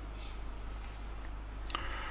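Pause between sentences of speech: a faint steady low hum with light hiss, and one short click near the end.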